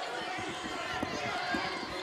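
Basketball arena crowd murmur, with players running on the hardwood court and a few soft thuds of the ball being dribbled.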